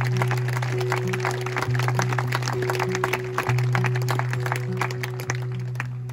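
Acoustic guitar holding a low note, re-struck about every two seconds, with a higher note ringing above it, as the intro to a song. Scattered hand claps are heard throughout.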